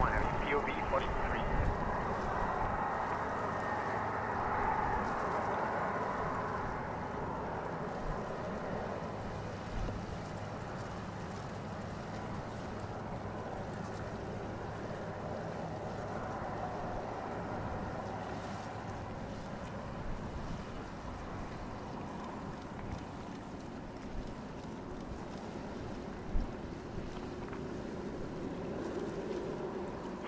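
Airbus A310-304's twin General Electric CF6-80C2 turbofans running at taxi power as the jet rolls onto the runway and lines up: a steady jet engine noise, loudest in the first several seconds and then settling lower.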